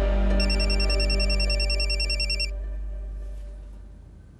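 A phone ringing with a fast electronic warbling trill for about two seconds, stopping abruptly, over sustained background music that fades out.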